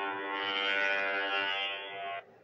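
A steady drone at one unchanging pitch, rich in overtones, in a played-back recording. It is an unexplained noise that the listeners say they cannot identify.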